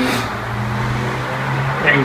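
A man's voice holding a long, steady-pitched 'uhh' of hesitation, with a low steady room hum underneath.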